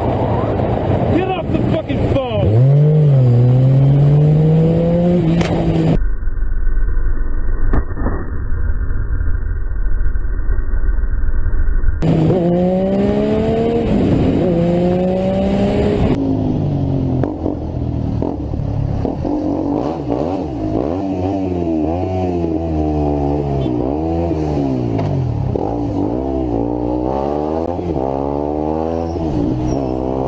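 Motorcycle engines accelerating through the gears, the pitch climbing in each gear and dropping at each shift, over several short cuts. One stretch sounds dull and muffled. In the second half the engine revs up and down in quick succession.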